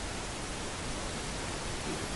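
Steady, faint hiss of room tone in a large hall, with no voice.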